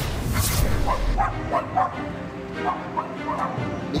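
A dog barking in several short, separate barks, with music underneath.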